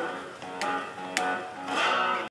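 Homemade 2x4 plank guitar with an electric pickup, played with a slide: plucked notes ring on and glide in pitch, with two sharp plucks about half a second and a second in.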